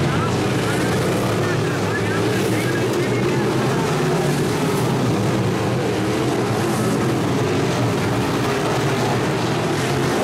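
Several dirt-track Modified race cars running at speed around the oval, their V8 engines blending into a steady, loud drone.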